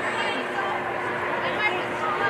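Several voices of spectators and players at a soccer game overlapping in indistinct talk and calls, over a steady hum.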